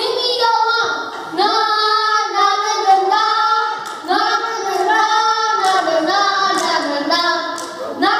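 A child singing into a hand microphone, with long held notes that slide up and down in pitch.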